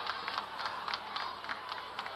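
Ballpark crowd ambience with a few scattered claps and faint chatter from a small crowd.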